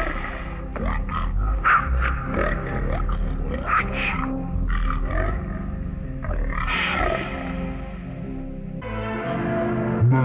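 Commercial soundtrack music with animal-like growls and grunts over it. About nine seconds in, it switches abruptly to a different jingle.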